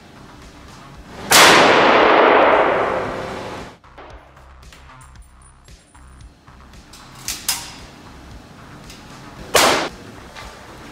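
A single .270 rifle shot from a Remington 7600 pump-action about a second in, its report echoing through the indoor range and dying away over about two seconds. Light clicks follow, then a sharp clack near the end as the rifle is handled.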